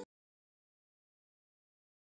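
Complete silence: the sound track drops out entirely.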